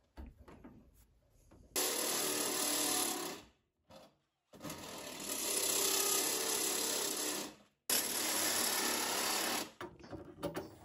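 Handheld power tool run in three bursts, about one and a half, three and two seconds long, a harsh whirring noise with a steady high whine, stopping cleanly between bursts.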